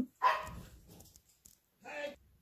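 A dog barking: one bark just after the start and another near the end, at a person arriving home.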